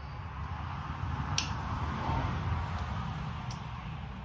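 Hands handling twine to mock up a wiring harness: low rustling handling noise, with one sharp click about a second and a half in and two fainter ones later.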